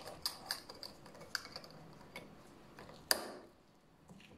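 Glass clip-top jar being closed: small clicks and rattles of the glass lid and its wire clasp as the lid is pressed down, then the clasp snapping shut with one sharp click about three seconds in.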